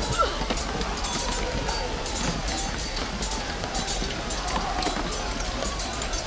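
Sound-effects opening of a metal track: irregular footfalls, as of someone running, over a steady low hum, with faint voices in the background.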